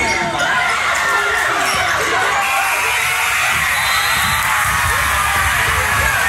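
Basketball game in a gym: a ball bouncing, sneakers squeaking on the court, and a crowd shouting and cheering throughout, louder and denser from about halfway in.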